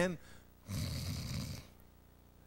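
A man imitating a loud snore into a microphone: a single snore lasting about a second, starting just under a second in.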